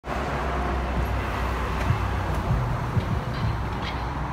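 Steady traffic rumble with a car rolling slowly past close by, and a few light knocks about halfway through.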